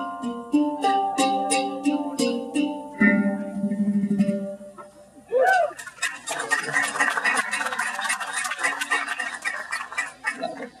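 Hang drum played by hand: single ringing, pitched notes struck one after another for the first four seconds or so, then after a short gap a fast roll of rapid, even taps to the end. A brief swooping tone sounds in the gap.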